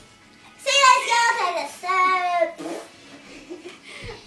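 A girl's high-pitched, wordless voice, sing-song or squealing, in two drawn-out stretches in the first few seconds, then quieter.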